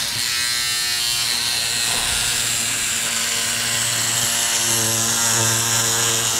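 Battery-powered handheld electric scissors running with a steady buzz as they cut through fiberglass mat.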